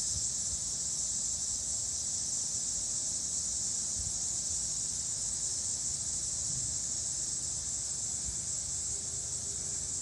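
A steady, high-pitched chorus of insects, unbroken throughout.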